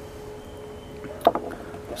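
A pressed-glass salt shaker handled in the hand, giving one sharp clink about a second in, over a faint steady hum.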